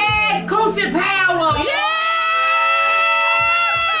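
Women's voices calling out together, then one high voice holds a single long, steady note for about two seconds that drops away at the end.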